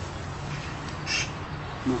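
A pause in a man's speech, filled by a steady low hum from the recording, with one short hiss about a second in.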